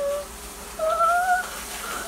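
A pet animal's drawn-out whining calls: one rising and then held, ending just as the sound begins, then a second, slightly higher call about a second in.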